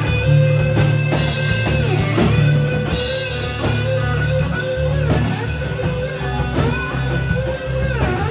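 Live band playing an instrumental passage: electric guitar lead with sliding notes over strummed acoustic guitar, a steady low bass line and drum kit.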